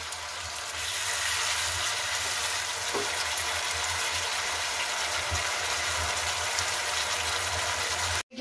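Star fruit launji, slices in a thick sweet-and-sour masala sauce, sizzling in a frying pan as it cooks down: a steady hiss.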